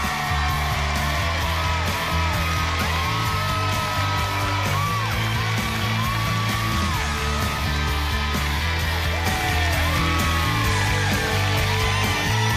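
Upbeat entrance music with a heavy bass line, under a studio audience clapping, cheering and whooping.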